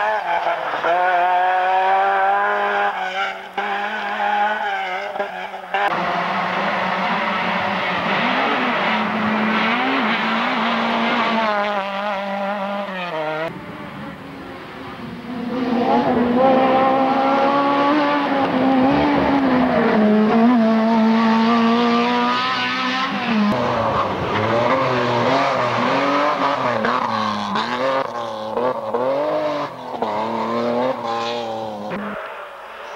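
Rally car engines revving hard as the cars drive past one after another, the pitch climbing and dropping again and again with throttle and gear changes. The sound breaks off abruptly a few times as the footage cuts from one car to the next.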